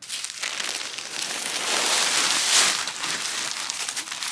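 Large plastic bag of compost crinkling and rustling as it is grabbed and hauled upright, a dense continuous crinkle that swells around the middle.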